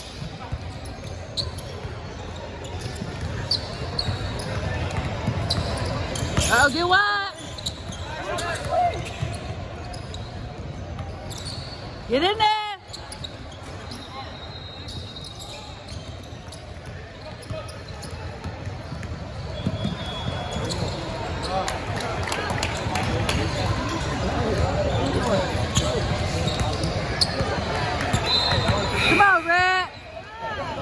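Basketball game on a hardwood gym floor: the ball bouncing amid general voices and chatter in a large hall, with a few sharp sneaker squeaks about 7 and 12 seconds in and again near the end.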